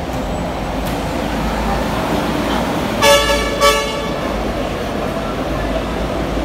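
A vehicle horn toots twice about three seconds in, a half-second blast followed quickly by a shorter one, over a steady low traffic rumble.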